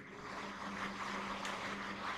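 Marker scratching on a whiteboard as a word is written, over a steady low hum.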